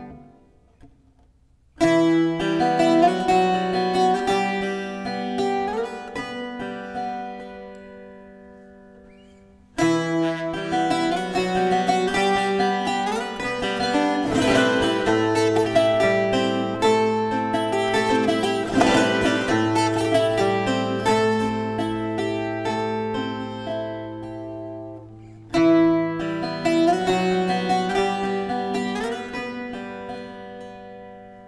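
Azorean viola da terra played solo. After a brief silence, a ringing chord about two seconds in is left to fade slowly. A new phrase starts near ten seconds and runs into a flowing melody over a held low bass note from about halfway. There is a short break and a fresh strike near the end.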